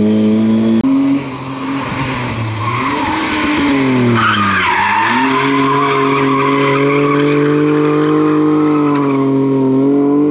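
Competition car engines at high revs: first a hatchback's, then, about a second in, a BMW E30's as it slides through a hairpin with its tyres squealing. The revs dip about halfway through and climb again, then hold high and steady as the car drives off.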